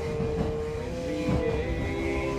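Male voices singing a cappella in close harmony, holding a chord that moves to a new one about a second and a half in, over the steady low rumble of a moving electric commuter train.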